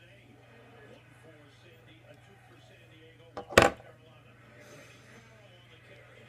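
A single sudden loud thump about three and a half seconds in, with a fainter click just before it, over faint background voices and a low steady hum.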